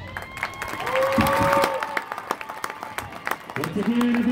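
Audience applause with scattered individual claps and a few shouted cheers, right after a marching band's show has ended.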